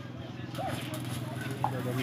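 Stick-welding arc crackling and buzzing as an electrode is run on a steel pipe with a small inverter welder, with a hiss that picks up about half a second in.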